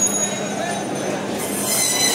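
Band saw cutting through a silver carp, the blade running with a steady hum and then squealing loudly and high-pitched as it bites through the fish, for the last half second or so.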